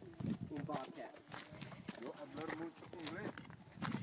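Footsteps on rocky, brushy trail ground, with scattered sharp steps and scuffs, while voices talk quietly in the background.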